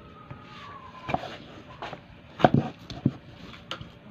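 Kitchen knife chopping bananas on a wooden chopping block: about six sharp, irregular knocks, the loudest two coming close together about two and a half seconds in.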